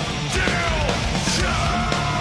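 Heavy metal band playing live: distorted guitars and a steady run of drum hits under shouted lead vocals that bend in pitch.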